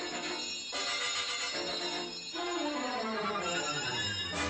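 Orchestral film-score music, played in short phrases with brief pauses, then a long downward slide in pitch through the second half.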